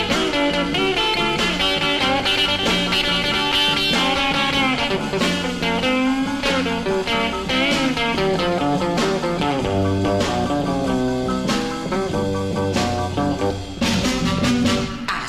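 A 1958 rock and roll single played from a 45 rpm vinyl record: an instrumental break between sung verses.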